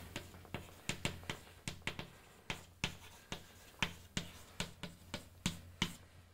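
Chalk on a blackboard while writing: a quick, uneven run of sharp taps and short scratches, about three or four a second, as each letter and bracket is struck onto the board.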